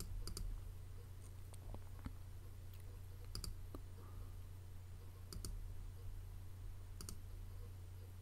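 Faint computer mouse clicks, a handful of short double clicks spread a second or two apart, over a steady low electrical hum.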